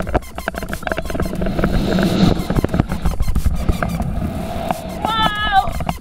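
Wind rushing and buffeting on a helmet-mounted action camera's microphone as the jumper drops off a high-rise roof on a rope jump. About five seconds in, a high, wavering cry rises over the wind.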